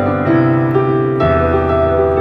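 Digital piano played with both hands: sustained chords with moving upper notes, and a new chord with a deeper bass note struck just past halfway.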